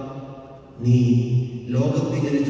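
A man's voice close to the microphone: a short lull, then about a second in a loud, chant-like held tone on one steady pitch for under a second, running back into speech.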